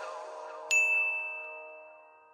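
A single bright bell 'ding' sound effect about two thirds of a second in, ringing out and slowly fading, over the held last chord of a song dying away.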